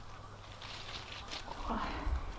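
Tomato plant foliage rustling faintly as small cherry tomatoes are picked off the vines by hand. A brief low vocal sound comes near the end.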